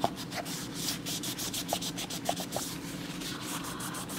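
Bounty paper towel rubbed briskly over an iPhone 7's aluminium back and edge, many quick scrubbing strokes with a few small clicks of fingers against the phone.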